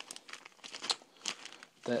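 Bags of pipe tobacco crinkling and rustling as they are handled, in a string of short, sharp crackles.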